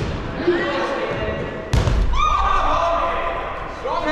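Dodgeballs striking during play, with a sharp knock at the start and a louder, deeper thud a little before two seconds in, followed by players' high-pitched shouts.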